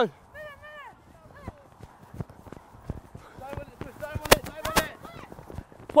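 Faint, distant shouts of young rugby players, with scattered soft thumps of running footsteps on grass. Two sharp knocks come a little past four seconds in.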